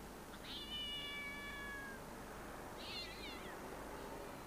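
Two high-pitched animal calls. The first is long, about a second and a half, and falls slightly in pitch; the second, shorter and wavering, comes near the end.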